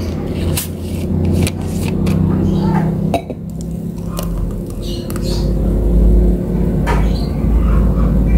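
A thick fruit smoothie pouring from a blender jar into a drinking glass, with a few sharp clinks of jar and glass, over a steady low drone.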